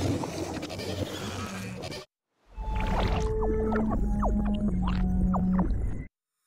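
Pitch-shifted, distorted logo jingle audio in the high-pitched 'high voice' effect. A dense effect sound cuts off about two seconds in, and after a short silence a new jingle starts: high tones that jump and slide in pitch over a low steady drone.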